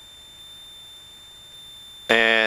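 Faint steady high-pitched electrical whine over a low hiss in the recorded cockpit audio.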